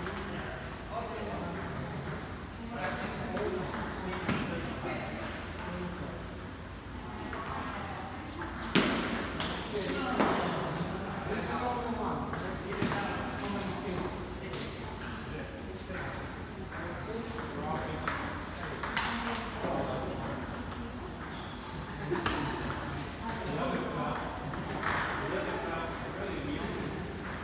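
Table tennis ball clicking off bats and the table during rallies, in spells with pauses between points, over background voices talking.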